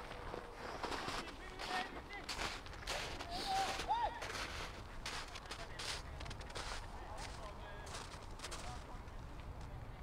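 Outdoor football-match sound: distant players' shouts and calls, loudest about four seconds in, over a scattered run of sharp clicks and knocks.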